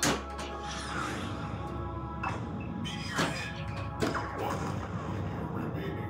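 Stern Meteor pinball machine in play: steady music from the game with sound effects. A sharp hit sounds right at the start, and three more about two, three and four seconds in.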